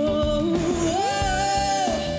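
Live pop-rock band music: a lead melody slides upward and settles on a long held high note about a second in, over bass and drums, with electric guitar prominent.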